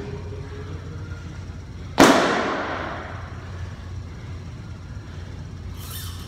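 A heavy gym weight dropped on the floor about two seconds in: one loud slam that rings and echoes for about a second.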